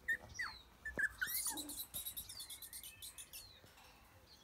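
Puppies giving short, high whines and yips, a few quick rising and falling cries in the first second or so. They are followed by a fast, high chirping trill lasting over a second, from a bird in the background.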